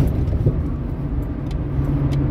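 Steady road and engine noise inside a vehicle's cabin while cruising on a freeway: a low, even rumble.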